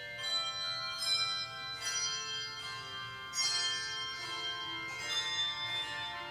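Handbell choir playing a slow piece: struck chords ring on and overlap, with a new stroke every second or so.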